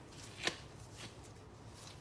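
Gloved hands handling dough at the counter: one light, sharp tap about half a second in and a softer one near the middle, over faint room tone.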